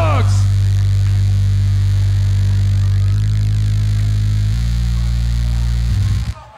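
A deep, steady bass drone from a beatboxer's vocal bass fed through a loop station, holding one low note and then changing pitch twice, about three seconds in and again about a second and a half later.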